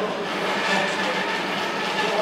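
Metal-cutting chop saw running, a steady mechanical noise with a constant low hum.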